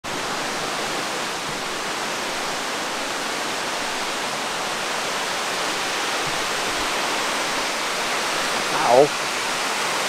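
Steady rushing of a small waterfall cascading over rocks, an even unbroken roar of water.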